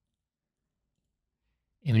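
Near silence: the audio is dead quiet until a man's voice starts speaking near the end.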